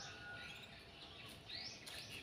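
Faint bird chirps: a couple of short rising calls, one at the start and one about one and a half seconds in, over quiet outdoor background noise.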